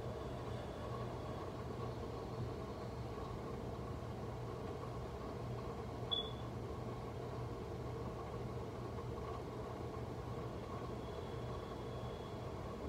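A steady low mechanical hum, even throughout, with one brief high-pitched chirp about halfway through.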